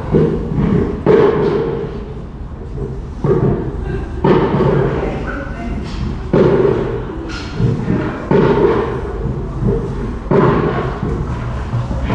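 Repeated muffled thumps and bumps, one every second or two.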